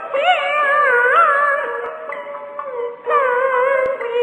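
Old Peking opera recording: a high melodic line in long held notes that waver and slide in ornaments, dipping briefly about three seconds in, with a single click just before the end.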